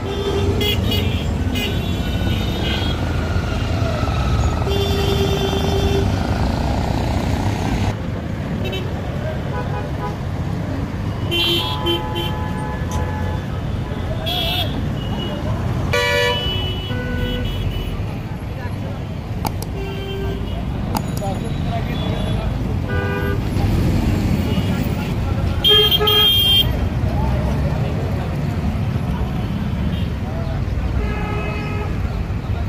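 Busy city street traffic: a steady rumble of engines and tyres, with vehicle horns honking in short toots every few seconds, the longest and loudest about 26 seconds in.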